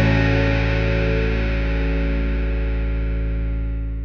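Last chord of a power-pop rock song held on distorted electric guitar with bass underneath, ringing out and slowly fading.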